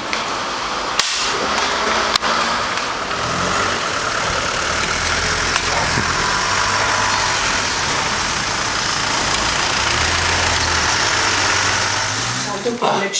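Delivery truck engine running at idle, a steady low hum, with a couple of sharp clicks early on.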